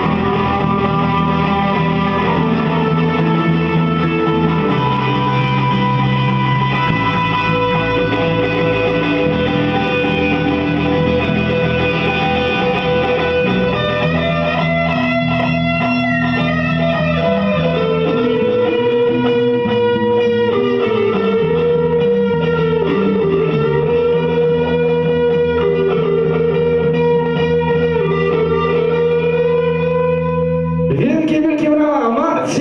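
Electric guitar and electric bass playing live together: an instrumental piece of held chords and sustained lead notes over a bass line.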